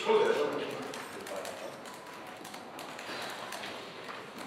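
A brief voice at the start, then a pause filled with low room murmur and faint light tapping.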